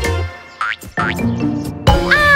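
Cartoon background music with springy boing sound effects for a hopping boot: a quick rising glide about two-thirds of a second in, then a short knock, and a sharp click near the end.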